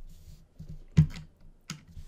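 Computer keyboard being typed: a few separate keystrokes, the loudest about halfway through.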